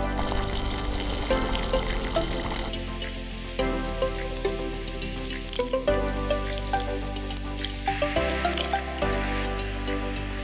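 Thick masala gravy bubbling and sizzling in a pan under background music, with louder crackling about five and a half and eight and a half seconds in.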